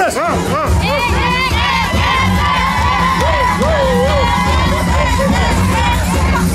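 Crowd of party guests cheering and shouting excitedly, many voices at once, with a batucada percussion group's drums beating low underneath from about a second in.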